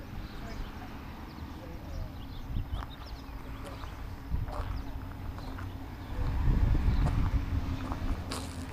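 Wind rumbling on the camera microphone, louder about six seconds in, with scattered soft footstep-like ticks from the person walking on grass.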